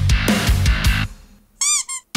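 Djent metal mix playing back: heavy low chugging from down-tuned guitars, bass and drums in a stop-start rhythm. It breaks off about a second in. Near the end there is a quick run of high, wavering squeals just before the band comes back in.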